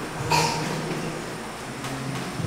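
Electronic keyboard playing soft sustained low chords that change every second or so, with one short sharp sound about a third of a second in.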